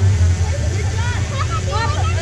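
Mod 4 race car's four-cylinder engine idling with a steady low rumble, with people's voices talking close by from about a second in.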